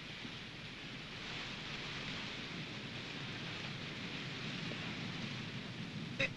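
A steady, even hiss with no distinct events, swelling slightly about a second in and then holding level.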